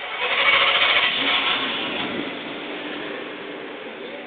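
A motor vehicle engine running close by, starting suddenly and loud, then slowly fading over the next few seconds.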